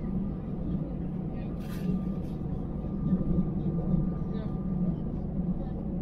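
Steady low drone of a jet airliner's cabin as it taxis, engines running at low power, with a faint steady whine above it.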